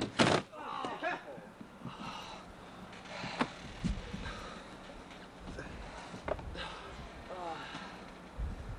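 A wrestler's body slammed down onto plywood boards: one loud crash just after the start, the boards cracking under him. Spectators' shouts and whoops follow, with a couple of smaller knocks from the boards.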